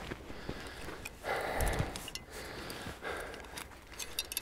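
A man's heavy breathing after a drink of water: a long breath out a little over a second in, then two shorter ones near the end.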